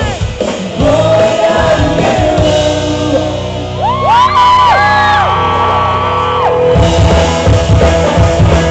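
Live rock band playing: electric guitars, bass and drums with sung vocals, the voices holding long notes in the middle before the full band hits in hard again near the end.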